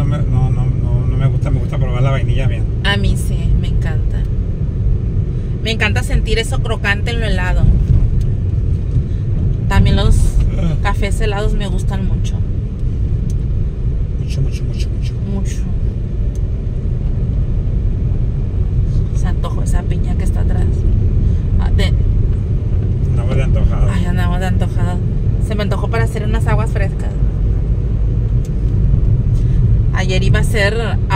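Steady low rumble of a car's engine and tyres heard from inside the cabin while driving on a city street, with a few stretches of quiet talking.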